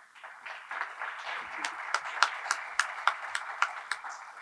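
Audience applauding, with a number of sharp individual claps standing out above the steady patter.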